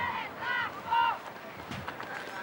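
A high-pitched voice calling out three short times, about half a second apart, over faint background noise.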